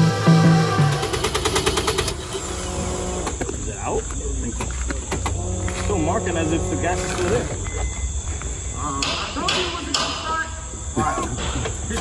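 Electronic intro music for about two seconds, then cutting to an outdoor background of indistinct voices over a steady low rumble.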